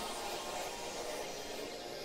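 Steady hiss-like background noise.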